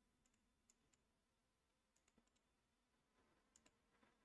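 Near silence broken by a few faint computer mouse clicks, some in quick pairs.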